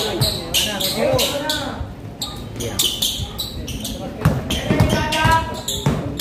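A basketball bouncing on a painted concrete court during play, a series of short thuds, mixed with talk from players and spectators and a cough about three seconds in.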